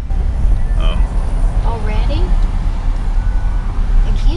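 Steady low rumble of road and engine noise inside a moving car's cabin, with faint voice sounds around the middle.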